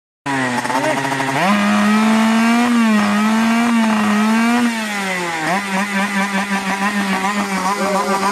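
Enduro-style moped's small two-stroke engine revving up and holding a high, wavering rev, dropping off briefly about five seconds in and then revving back up.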